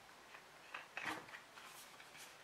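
Faint handling sounds of a plastic shampoo bottle and its cap: a few soft clicks and rustles around the middle.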